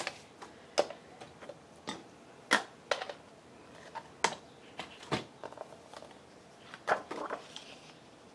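Scattered sharp clicks and taps, about eight spread unevenly over several seconds, from paper and plastic craft tools being handled and set down on a paper trimmer and cutting mat.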